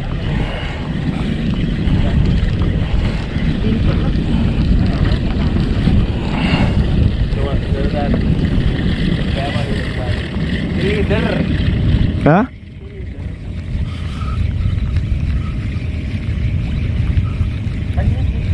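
Strong wind rumbling on the microphone over open sea, with a few short vocal exclamations mixed in. About twelve seconds in the sound drops abruptly, and the wind goes on more quietly.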